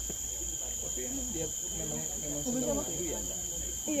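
Insects chirring as a steady, high-pitched drone with a thinner steady tone beneath it, with faint voices talking in the background.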